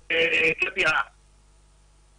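About a second of speech with the narrow sound of a telephone line, which stops abruptly; then the line goes very quiet, leaving only a faint steady hum.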